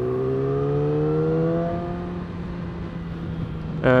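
2020 Yamaha R6's inline-four engine under way, its pitch rising slowly for the first two seconds or so as the bike gathers speed, then fading, over road and wind noise.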